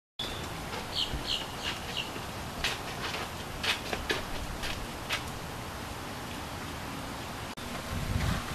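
Outdoor ambience with a bird chirping: a quick run of short high chirps about a second in, then scattered sharper calls over the next few seconds.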